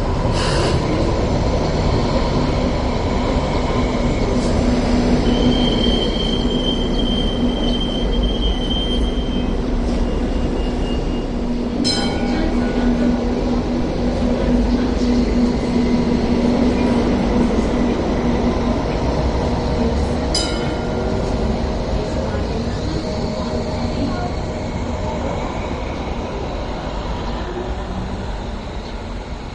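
Hong Kong Light Rail vehicle running through the stop, with a steady low hum over its rolling noise. A high wheel squeal rises for a few seconds after the start, and there are two sharp knocks later on. The sound fades slowly near the end.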